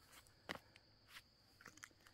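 Near silence with a few faint soft footsteps on grass: one about half a second in and a few lighter ones later.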